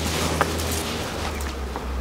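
Footsteps and brushing through tall dry weeds over a low steady rumble, with one small click about half a second in.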